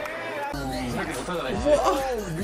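Several people talking over one another in lively chatter; only speech, no other sound stands out.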